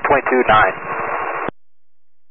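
A man's voice over a VHF aviation radio frequency finishing a transmission, followed by a steady burst of radio static hiss that cuts off suddenly about a second and a half in: the squelch tail as the transmission ends.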